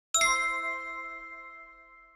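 Notification-bell sound effect: a single bell-like ding, struck once just after the start and ringing out in several tones that fade away over about two seconds.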